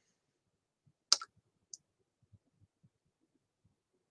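Near silence broken by one sharp click about a second in, followed by a faint high tick a moment later.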